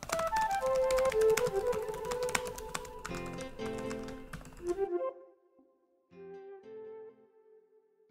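Fast typing on a computer keyboard, a quick run of clicking keystrokes over light background music. The typing stops about five seconds in, leaving only a few soft notes of the music.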